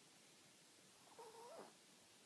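A Yorkshire terrier gives one short, faint whimper about a second in, its pitch wavering up and then back down, against near silence.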